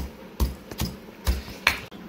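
Stone pestle pounding black pepper, cumin seeds and dried chilli in a granite mortar: about five sharp knocks, roughly two a second, stone striking stone through the crushed spices.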